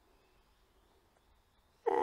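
Near silence: faint room tone, with a man's voice starting to speak right at the end.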